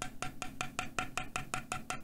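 Keychron Q2 mechanical keyboard being typed on rapidly, a steady run of about eight keystroke clacks a second. The aluminium case gives each stroke only a little ping.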